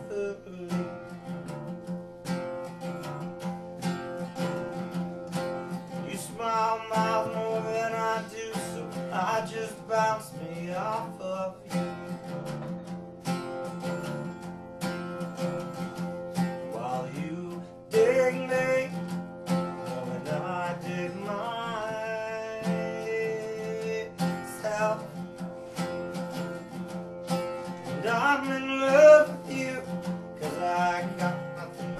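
Acoustic guitar strummed steadily with a man singing over it, the vocal coming in phrases between guitar-only stretches.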